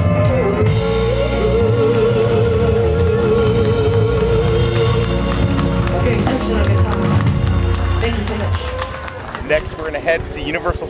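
Live rock band playing, with drums, bass and guitar under a singer holding one long wavering note. The music drops away near the end.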